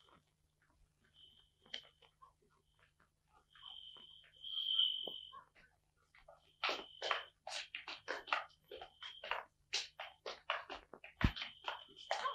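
Faint blasts of a night watchman's whistle: a steady high tone that starts and stops several times. A rapid run of short, sharp sounds, about three a second, fills the second half.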